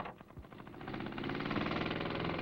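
Small engine of a portable compressor running just after being started, building up over the first second to a steady, even run.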